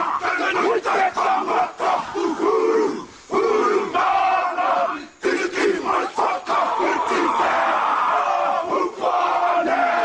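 A group of men performing a Māori haka, chanting and shouting the words in unison in short, forceful phrases, with brief breaks about three and five seconds in.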